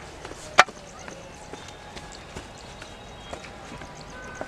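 A single sharp knock about half a second in, then faint scattered taps and clicks.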